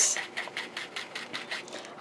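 Foam ink-blending sponge rubbed in quick, even strokes over the edge of cardstock, about six to seven strokes a second, stopping near the end: ink being blended onto the paper's edge.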